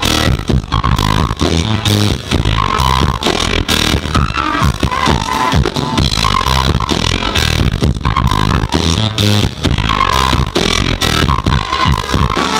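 Live swing band playing: flute melody with trumpet over a drum kit, a short melodic phrase coming back every second or two over a steady beat.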